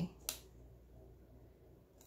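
A single short, sharp click about a third of a second in, then quiet room tone.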